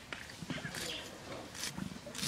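An onion being peeled and cut against the fixed curved blade of a boti, heard as several short, crisp scraping and cutting sounds.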